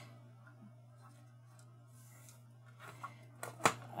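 Cardstock being slid and squared by hand on a cutting mat: a quiet stretch, then a few soft paper rustles and clicks and one sharp tap near the end, over a steady low hum.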